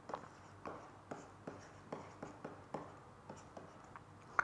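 Stylus writing on a tablet or pen display: a string of faint, light ticks and scratches, about three a second.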